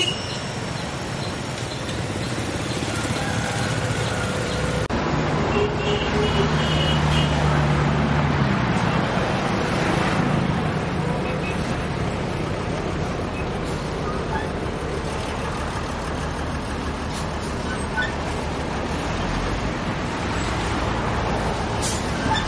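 Road traffic noise: vehicles passing with their engines and tyres making a steady roar, a lower engine note standing out briefly a few seconds in, and faint indistinct voices.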